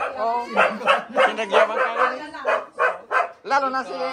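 A dog barking repeatedly in short, quick barks, with people's voices around it.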